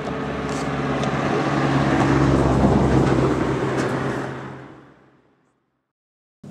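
A motor vehicle's engine with a steady low hum. It swells to its loudest two to three seconds in, then fades out to silence about five seconds in.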